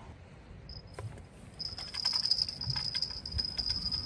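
Fixed-spool sea-fishing reel being wound in, a steady high whirr with fast fine ticking that starts just after a knock about a second in: the angler is striking at a bite and retrieving line.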